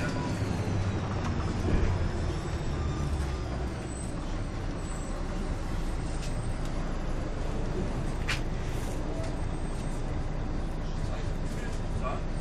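Volvo B10MA articulated bus heard from inside: its diesel engine and running gear as a steady low rumble. A brief sharp sound cuts through about eight seconds in.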